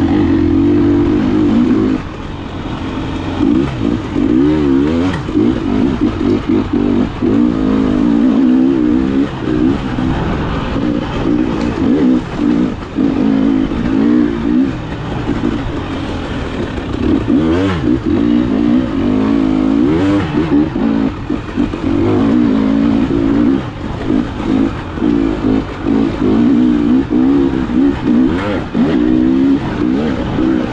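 KTM 300 XC-W two-stroke engine heard from the rider's own bike, its note rising and falling constantly as the throttle is opened and closed, with a drop in level about two seconds in. Occasional knocks are heard over the engine.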